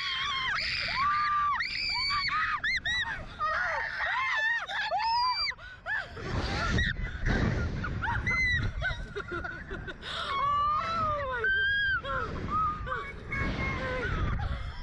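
Two young women screaming again and again, short high cries rising and falling in pitch, as a slingshot reverse-bungee ride flings them into the air.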